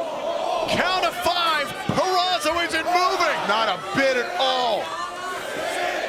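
Arena crowd yelling along with the referee's ten count, many voices shouting at once. Near the start there are one or two sharp knocks or clatters.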